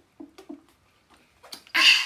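A woman gulping straight from a bottle, three quick swallows in the first second, downing it in one go. Near the end comes a loud, noisy rush of breath as she finishes.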